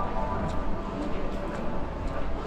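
City street ambience: a steady low traffic rumble with the indistinct voices of passersby.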